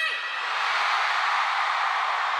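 Large concert crowd cheering and screaming, a steady wash of many voices with no single voice standing out.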